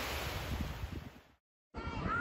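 Waves washing and breaking onto a pebble shore, fading out after about a second, followed by a moment of silence.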